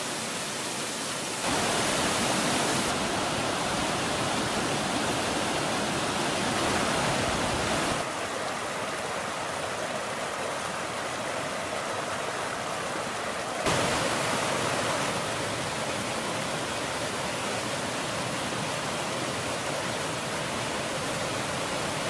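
Creek water rushing over rocks and down a small waterfall, a steady rush that jumps up or down in level abruptly three times.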